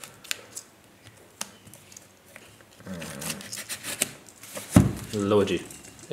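Small knife slitting the packing tape on a cardboard shipping box: a few faint sharp clicks and scratches of the blade on tape and cardboard. In the second half a person's voice is heard briefly, the loudest sound.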